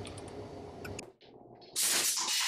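A few faint mechanical clicks from a hand-operated mushroom spawn inoculation gun. After a brief silence, a loud, steady hiss starts near the end.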